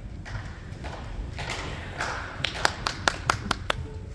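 A quick run of about seven sharp taps, about five a second, over low murmuring.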